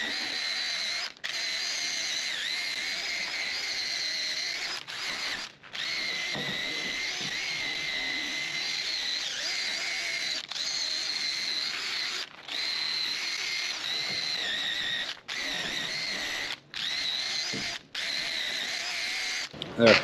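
DeWalt 20V cordless driver spinning a wire cup brush against a rusted steel door hinge, stripping the rust. A steady high whine, cut off briefly about nine times as the trigger is let off and squeezed again.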